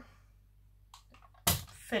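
Quiet room tone, then a single short thump about one and a half seconds in, as a small plastic yogurt pot is set down on a table.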